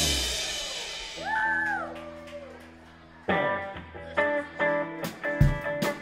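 Live rock band's final chord and cymbal crash ringing out and fading, with a brief sliding tone about a second in. About three seconds in a new electric guitar and keyboard chord starts, and the drum kit comes in with steady strikes near the end.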